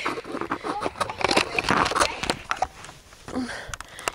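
Fabric rustling close to the microphone, with scattered soft knocks and clicks from handling.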